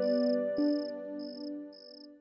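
Cricket chirping in steady pulses, about two a second, over soft background music of long held notes that fade near the end.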